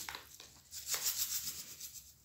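Desiccated coconut pouring from a plastic bag into a plastic bowl, a soft rustle of falling flakes and crinkling bag that starts under a second in.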